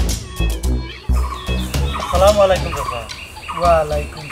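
Background music with drum hits in about the first second, then wavering bird calls, twice, about a second and a half apart.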